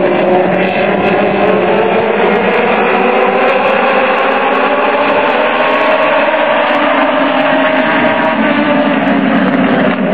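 A pack of Legends race cars at racing speed, their Yamaha motorcycle engines blending into one loud, steady drone. Several engine pitches rise and fall slowly as the cars circle the oval.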